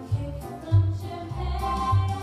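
A woman singing a solo show tune on stage over musical accompaniment, with a steady bass note on each beat, a little under two beats a second.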